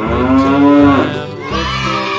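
A single long moo-like call, rising and then falling in pitch for a little over a second, over the steady backing music of a children's nursery-rhyme song.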